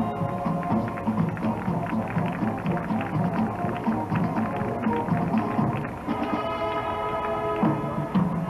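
High school marching band playing, with a busy run of drum and marching-bell strikes; about six seconds in, a held chord from the winds comes in.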